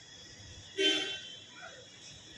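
A brief vehicle horn toot a little under a second in, over a faint background.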